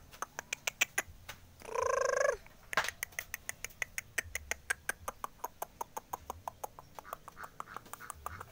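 A single animal call, a little under a second long, about two seconds in, over a fast run of short sharp clicks.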